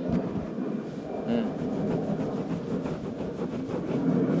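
Hands rubbing skin on skin close to the microphone: one hand scraping back and forth over the palm of the other in a self-massage, a steady rough rustle.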